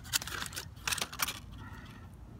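Aluminium foil crinkling as it is pulled away from a hot baked potato: a few sharp crackles in the first second or so, then quieter handling.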